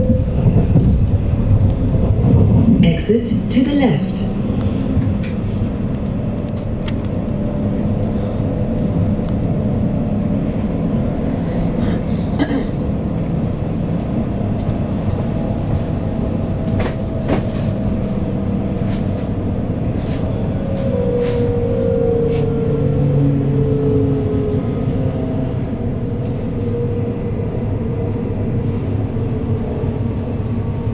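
Inside a Berlin S-Bahn class 484 electric multiple unit under way: a steady rumble of wheels on rail with the hum of the electric traction drive, its tones shifting in pitch over the second half, and a few sharp clicks along the way.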